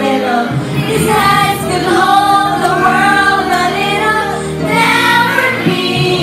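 A group of women singing together karaoke-style, one or two voices amplified by microphones, over a backing track played through a party speaker.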